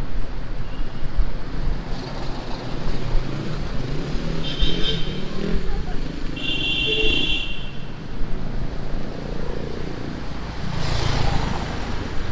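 Road traffic passing: a steady rumble of cars and motorcycles, with two short high-pitched tones in the middle, and a vehicle passing close near the end.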